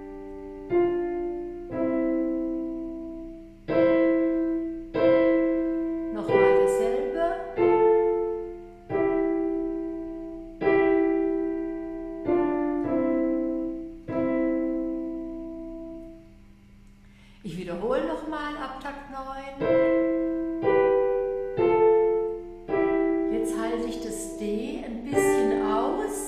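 Digital piano played slowly with the right hand alone: a melody in two-note intervals, about one note a second, each left to ring, with a short pause about two-thirds of the way through.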